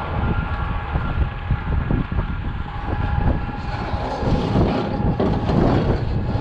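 Heavy diesel machinery running in a steady low rumble with a thin steady whine, mixed with wind rumble on the microphone that grows stronger in the last two seconds.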